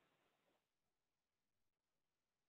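Near silence: a muted gap on a video-conference call.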